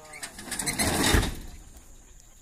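A cow's hooves scrambling and scuffing over loose dirt as it bolts across the corral: a rush of noise that swells to a peak about a second in and fades away.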